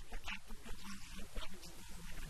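An elderly man's voice speaking into a handheld microphone in short, broken phrases.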